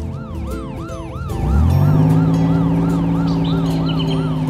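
Cartoon police car siren sounding a fast up-and-down yelp, about three sweeps a second. From about a second and a half in, a low engine hum rises in pitch and then holds steady under it.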